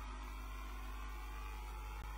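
Steady low electrical hum with a faint even hiss, and no other sound.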